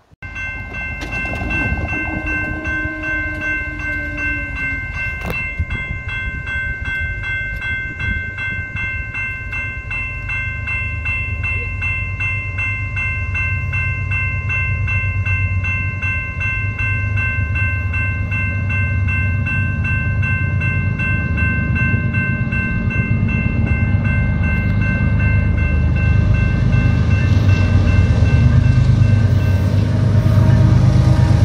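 Railroad grade-crossing bell ringing in a fast, steady repeating rhythm. The low rumble of an approaching freight train's diesel locomotives grows louder through the second half.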